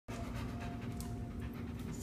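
A dog panting over a steady background hum.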